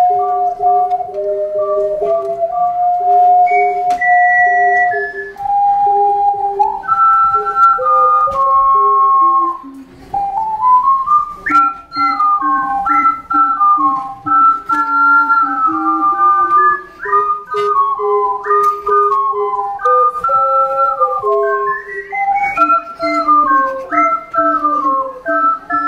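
An ensemble of four ocarinas playing a piece together in several harmonising parts, with clear, nearly pure tones. The music breaks off briefly about ten seconds in, then goes on with a quicker-moving passage.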